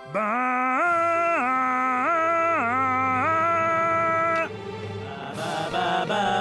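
A cartoon sheep's voice singing a long 'baa' that steps up and down between two notes, holds the higher one and breaks off about four and a half seconds in. Near the end several bleating voices join in together.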